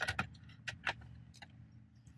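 A few light, sharp clicks and small rattles as an aftermarket double-DIN head unit is handled and seated in a car dashboard, over a faint steady hum.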